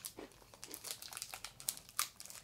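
A small foil snack packet crinkling as it is handled in the hands, a quick irregular crackle of many small pops.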